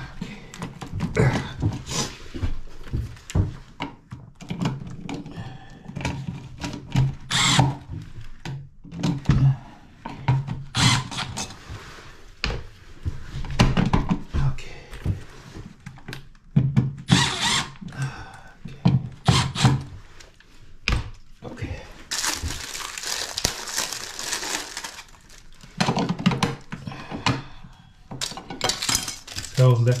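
Milwaukee FUEL cordless drill-driver running in short bursts to drive the mounting screws of GFCI outlets, with a longer run of about three seconds near the end. Between the runs come the clicks and clatter of outlets being pushed into their metal wall boxes and handled.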